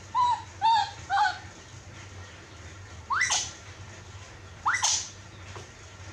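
Newborn baby monkey crying: three short coo calls in quick succession, then two sharper cries that jump up in pitch, about three and five seconds in.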